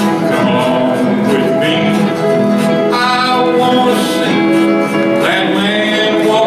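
Live country band playing: strummed acoustic guitars with long held steel-guitar notes, a steady run of music with no pauses.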